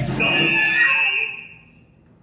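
A high, steady instrumental note from a small chamber-opera ensemble, held for about a second just after a sung phrase ends, then dying away.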